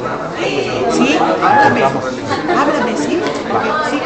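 Indistinct chatter of several people talking at once, many voices overlapping.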